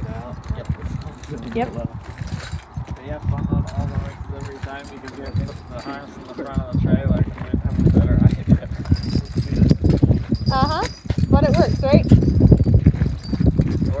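A man talking, with harnessed horses shifting their hooves on gravel close by.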